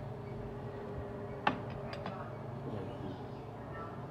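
Metal ladle knocking sharply once against the cookware about a second and a half in, with two fainter taps just after, over a steady low kitchen hum.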